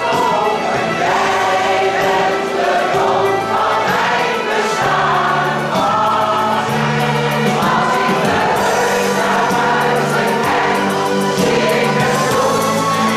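A choir singing a song with held low notes underneath, continuously.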